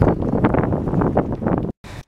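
Wind buffeting the camera microphone during a bike ride, a loud, uneven low rumble that cuts off suddenly near the end.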